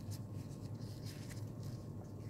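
Folded white fabric petals rustling and rubbing in a few short, faint scratches as fingers pinch and shape them, over a steady low hum.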